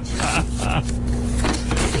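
Sheets of paper being fumbled and rustled close to a microphone, in several short noisy bursts over a steady low hum.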